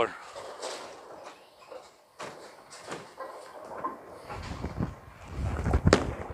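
Faint clatter, then a low rumble building over the last two seconds. It ends in one loud thud as a Legends Pure Diamond bowling ball is released and lands on the lane.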